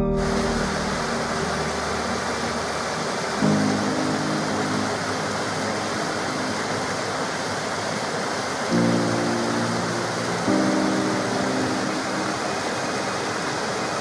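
Rushing water of a small cascade pouring into a pool, a steady hiss. Soft background music plays under it, with low held notes coming in a few times.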